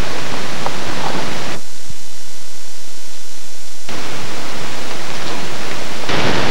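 Loud, steady hiss and static from an old camcorder tape recording, with no speech; the hiss thins out for about two seconds in the middle.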